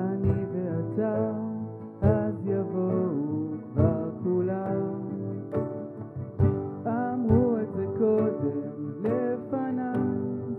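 Live acoustic band playing a ballad: a gliding lead melody from the front microphone over acoustic guitar and grand piano chords, with a cajon striking every second or two.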